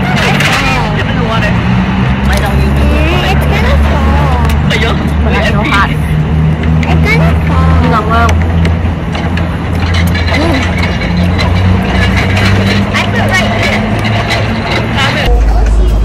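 Voices talking, not close to the microphone, over a loud, steady low rumble.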